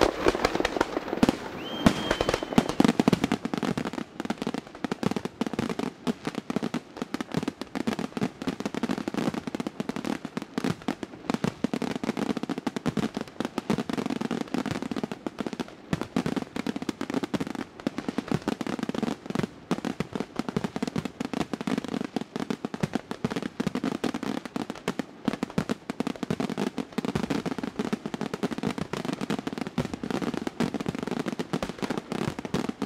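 Aerial fireworks display in a dense, continuous barrage of shell bursts, many reports each second, with a short whistle about two seconds in.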